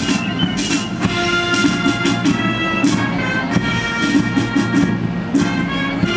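Military band playing a march outdoors: held wind-instrument notes over steady drum beats.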